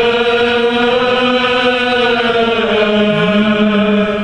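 A choir of men's voices sings a slow Armenian liturgical chant in long held notes, with a lower voice rising into the sustained note about three seconds in.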